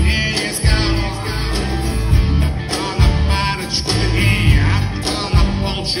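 Live rock concert music played loud through a PA, with heavy bass and drums pulsing all through and a voice singing in short phrases over it.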